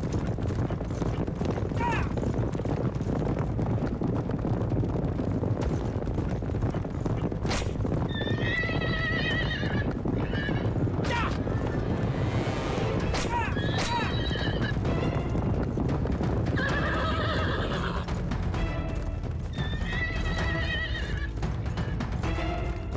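Horses galloping, their hooves beating steadily on turf, with a horse whinnying several times: about eight seconds in, then again three times in the second half.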